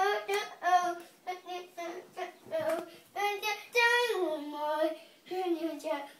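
A young boy singing alone in a high child's voice: short sung syllables, then a longer held note about four seconds in that slides down in pitch.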